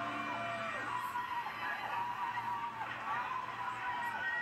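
Excited shouting and whooping from game-show contestants and a studio audience, several long rising-and-falling yells overlapping, heard through a television speaker over a steady low hum.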